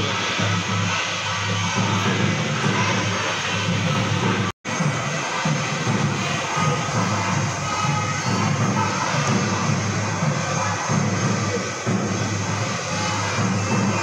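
Loud, continuous devotional music during a temple puja, with crowd noise beneath. It drops out for an instant about four and a half seconds in.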